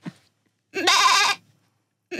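A woman doing a goat impression: one wavering, bleating call a little under a second long, about a second in.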